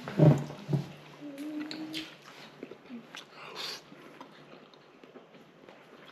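A man chewing a mouthful of food, with short closed-mouth "mmm" hums in the first two seconds, then quieter chewing and small mouth clicks.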